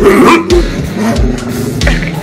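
A German shorthaired pointer gives a loud vocal sound in the first half second, over rock music with electric guitar and a steady beat.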